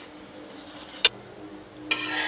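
Metal spatula working a wheat parotta on a hot flat pan. There is one sharp tick of the spatula against the pan about halfway through, and a sizzle rising near the end as the parotta is pressed.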